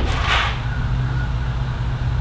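A steady low rumble, with a brief rustle of cotton T-shirts being handled on a table near the start.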